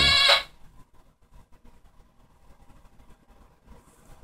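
Electronic sound effect from a toy sound machine: a held tone cuts off about half a second in. Then only faint light clicks are heard.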